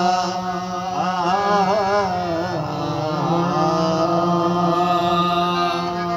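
Qawwali ensemble: harmoniums holding steady chords under male voices singing a long drawn-out note, which wavers in an ornamented run about one to two seconds in.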